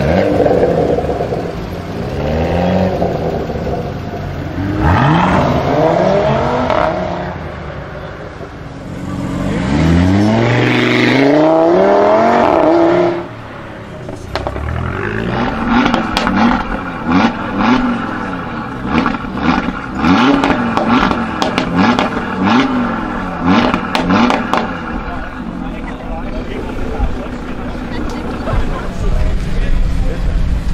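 Audi RS3 8V Sportback's turbocharged five-cylinder through its Audi sport exhaust: hard accelerations with the engine note rising through the gears in the first half. Then a run of quick revs about once a second, with crackles and pops on the overrun.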